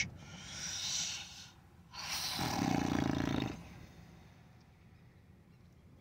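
A man breathing deeply: a long breath drawn in, then about two seconds in a louder breath let out over a second and a half with a low hum of voice in it, a sigh.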